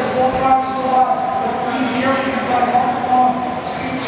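Several 1/10-scale electric RC touring cars racing on a carpet track, their motors and gears making overlapping whines that shift up and down in pitch as the cars speed up and slow through the corners.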